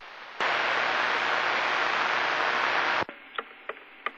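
CB radio receiver hiss: steady static begins about half a second in and cuts off suddenly about three seconds in, as a strong incoming station keys up and quiets it. A few faint clicks follow.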